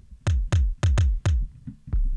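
Electronic kick drum sample triggered over and over from an Ableton Live 9 Drum Rack pad: about five hits roughly a quarter-second apart, each a short click over a low thump that drops in pitch. A couple of quieter hits follow near the end.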